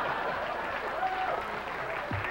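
Studio audience applauding steadily after a joke, with faint voices underneath.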